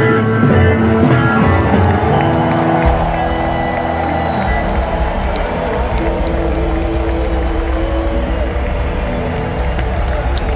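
Live rock band from guitar-and-drums playing into held sustained notes as the song closes, over a crowd cheering and applauding.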